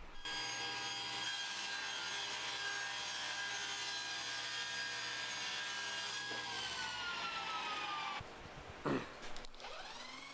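Table saw running as it cuts the corners off a square cherry leg blank, a steady whine. About six seconds in its pitch slowly falls for two seconds, then the sound cuts off abruptly.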